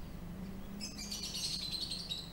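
Small birds chirping outdoors, a quick run of high twitters starting about a second in, over a faint steady low hum.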